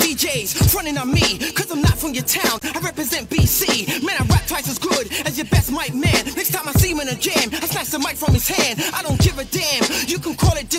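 Hip hop track from a mixtape: a rapper over a beat with a deep kick drum that drops in pitch on each hit.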